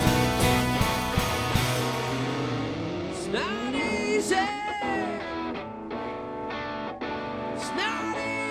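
Live rock band playing, with electric guitars and a drum kit. After about two seconds the low end and drums drop back, leaving a thinner passage with gliding, bending notes.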